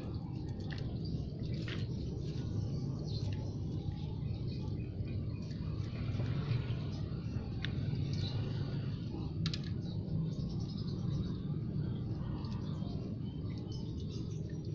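Faint scraping and crumbling of potting soil as a metal spoon digs around water spinach roots and the plants are pulled up from the pot, as scattered small scrapes and ticks. Birds chirp in the background over a steady low hum.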